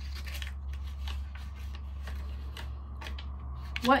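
A folded sticky note being unfolded by hand: a run of small, crisp paper crinkles and rustles over a steady low hum. A woman's voice starts just at the end.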